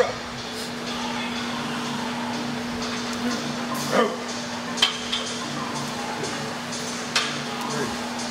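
Loaded Smith machine bar and plates clinking during standing calf raises: three sharp metallic knocks, one about halfway through, one shortly after and one near the end, over a steady low hum.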